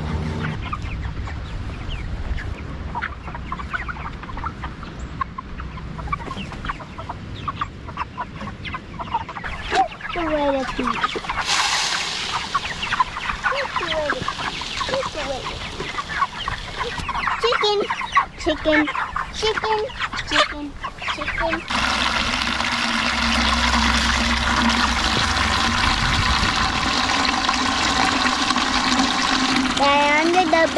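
A flock of young white meat chickens clucking and calling, crowding to feed poured from a bucket into a feeder. About two-thirds of the way in, a steady rush of running water starts and carries on.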